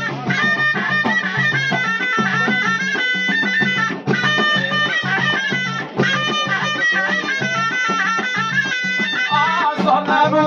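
Jebli ghaita, the Moroccan double-reed shawm, playing a high, ornamented melody that moves in quick steps, over frame drums beaten in a steady rhythm.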